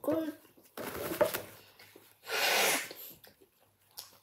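A child's short, mumbled vocal sounds with his mouth full of chocolate, then a loud, breathy exhale about two and a half seconds in.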